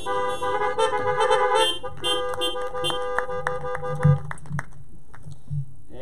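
The last chord of a worship song's keyboard accompaniment, with car horns honking from the parked cars of a drive-in congregation; the tones stop about four seconds in.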